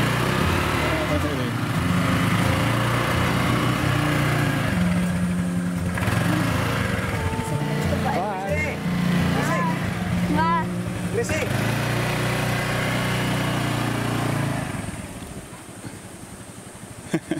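A Honda Vario motor scooter's small single-cylinder engine runs at idle and light throttle, its pitch stepping up and down, then fades away about fifteen seconds in as the scooter pulls off.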